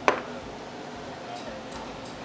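A single sharp click just after the start, then steady room noise.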